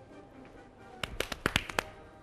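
Soft background music, then about a second in a quick, uneven run of about six sharp clicks.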